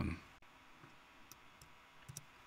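A couple of faint, sharp clicks from a computer mouse over quiet room tone.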